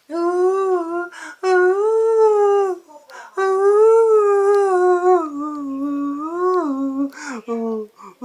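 A man singing unaccompanied, without words: long held notes that waver and slide gently in pitch, in three long phrases with audible breaths between them, then shorter notes near the end.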